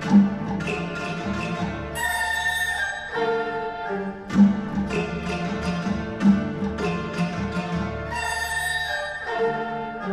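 Chinese traditional orchestra playing: bamboo flutes carry held high notes over quick plucked-string figures, with strong accented strokes at the start, about four seconds in and near the end.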